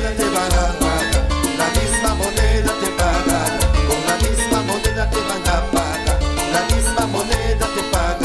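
Salsa orchestra playing an instrumental passage, with a driving rhythm from timbales, cowbell, congas and electric bass.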